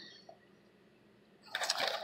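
Handling noise: after about a second of near silence, a short burst of rustling and clicking starts near the end as items on the desk are picked up and moved.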